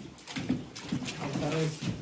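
Indistinct men's voices calling out in short phrases, with a few sharp knocks in between.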